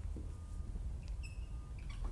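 Dry-erase marker squeaking on a whiteboard as words are written, with a short high squeak a little past the middle, over a steady low room hum.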